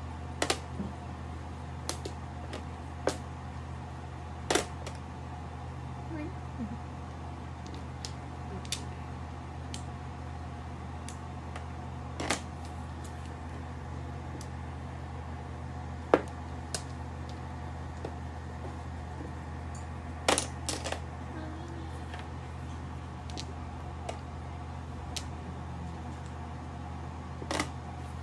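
Mahjong tiles clacking as they are drawn and discarded on a felt-topped table: single sharp clicks every few seconds, the loudest about sixteen seconds in and a quick double clack near twenty seconds. A steady low hum runs underneath.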